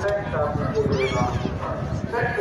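Several people talking close by at once, their words not clear.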